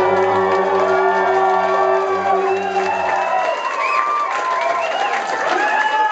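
Male a cappella vocal group holding a final sustained chord over a low bass note, which cuts off about three seconds in; the audience then breaks into cheering and whoops.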